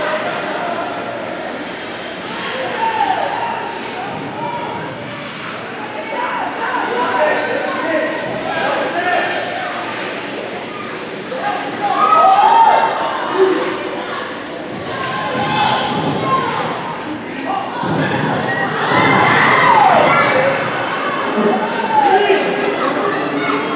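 Ice arena noise during a youth hockey game: high-pitched shouts and calls from players and spectators, with thuds from sticks, puck and boards, all echoing in the rink. The shouting swells about twelve seconds in and again near the end as play crowds the net.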